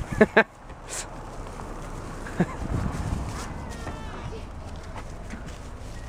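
Open-air yard background: a short vocal call just after the start, then a low steady outdoor hush with faint, distant voices.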